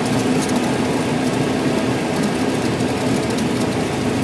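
Light single-engine airplane's engine idling, its two-blade propeller turning slowly, a steady drone heard from inside the cabin while taxiing.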